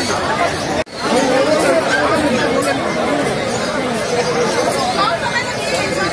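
Several people talking at once, a steady murmur of overlapping voices with no one clear speaker. The sound cuts out sharply for an instant a little under a second in.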